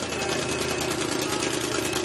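The engine of a modified Chevrolet two-door drag-racing car running at idle: a steady note with a fast, even pulse.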